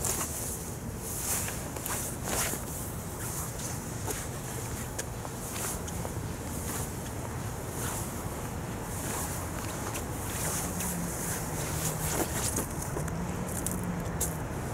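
Winter-jacket fabric rustling in short, irregular swishes as two people push against each other arm to arm, over a steady low outdoor rumble.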